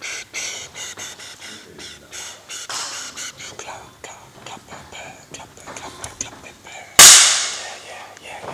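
Light rustling and clicking handling noises, then about seven seconds in a sudden, very loud burst of noise that fades away over about a second.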